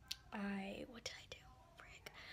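A woman speaking a few short, soft words.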